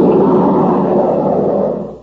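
A loud, steady roaring sound effect in an old radio broadcast, with a faint low hum of held tones under the noise, fading out just before the end.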